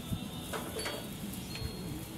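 A few faint clicks and taps from handling utensils and a pan at a gas grill, over steady low background noise, with a faint thin high ring coming in about halfway through.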